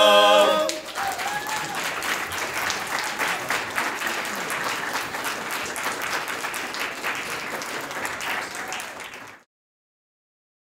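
A barbershop quartet holds the final a cappella chord of the song, which cuts off under a second in. An audience then applauds for about eight seconds, tapering off before it stops abruptly near the end.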